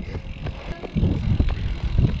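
Mountain bike rolling along asphalt, with wind on the camera microphone making a low rumble that grows louder about a second in.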